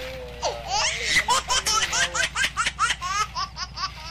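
High-pitched laughter in a rapid run of short, evenly repeated ha-ha bursts, starting about half a second in.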